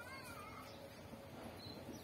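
Quiet background with a brief, faint wavering animal call at the start.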